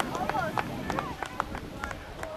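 Players and sideline spectators shouting across a soccer field: many short overlapping calls, none clear as words, with a few brief sharp knocks among them.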